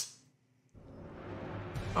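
Near silence, then the film's soundtrack fades in about three-quarters of a second in: a low rumble with score music, growing steadily louder.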